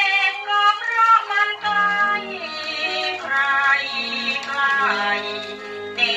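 A woman singing a Thai luk krung song with an orchestra, played from a vinyl record on a turntable through a valve amplifier and horn loudspeakers.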